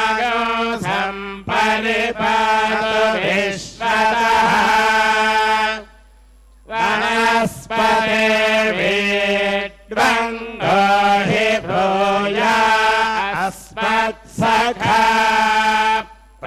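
Sanskrit Vedic mantras chanted on a few steady held notes, in long phrases with one short breath pause about six seconds in.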